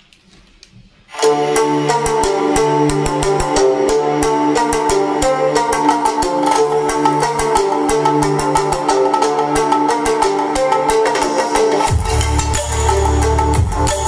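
Music played through a D10 OK Bluetooth amplifier board running on a 12 V motorcycle battery, into a subwoofer and a speaker bar: a plucked-string tune over a steady beat that starts about a second in, with deep, powerful bass joining near the end.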